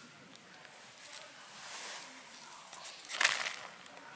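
Faint rustling and scraping of gravel and dry leaves as hands work a tent guyline into the ground, with a louder scrape about three seconds in.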